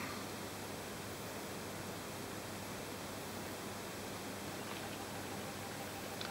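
Steady low hiss of room tone, with a faint thin high whine running underneath and no distinct sounds.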